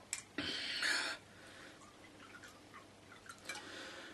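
Whisky poured from a glass bottle into a glass tumbler for about a second, followed by a few faint small clinks and knocks.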